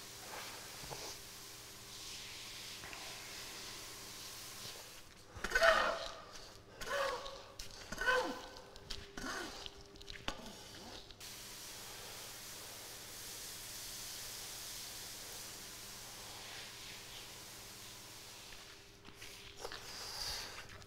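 A shovel scraping and scooping through a pile of damp sawdust and soybean-hull substrate (Master's Mix), several rough strokes over about five seconds in the middle. A steady faint hiss runs before and after them.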